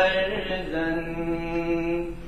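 A man's voice chanting the college anthem in a sung, drawn-out delivery, moving through a few notes and then holding one long note that stops right at the end.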